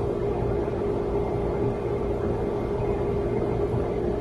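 A steady low drone with one held mid-pitched tone running under it, unchanging throughout.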